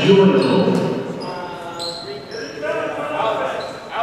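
Basketball game sounds on a hardwood gym court: indistinct voices of players and spectators, a basketball bouncing, and short sneaker squeaks. A single sharp knock comes near the end.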